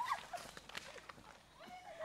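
Footsteps of people hurrying along a paved path, with faint distant voices calling out from about halfway through.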